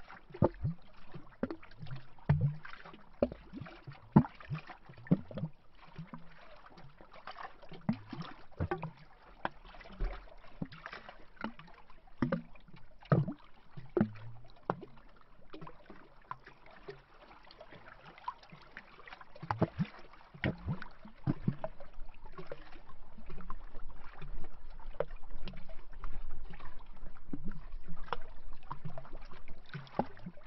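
Small lake waves lapping against a tree trunk at the water's edge, making irregular hollow glubs and little splashes. A low rumble comes in about two-thirds of the way through.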